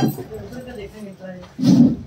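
Quiet conversation among several people, with a sharp click right at the start and a short, loud vocal burst near the end.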